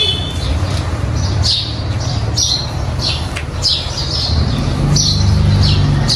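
A bird chirping over and over, short high calls about every half second to a second, over a steady low hum.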